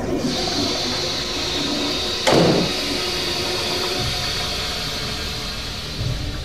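Toilet flushing: a steady rush of water through the whole stretch. A sudden thump about two seconds in is the loudest moment.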